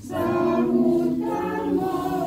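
A group of voices singing a hymn together, unaccompanied, in sustained notes.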